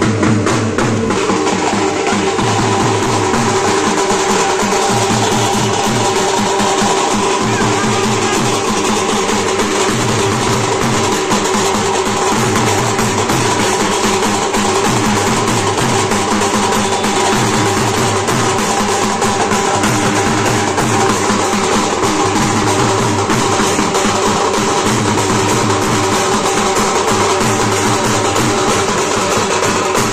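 Loud processional music: double-headed drums beaten in a steady rhythm under held melodic tones.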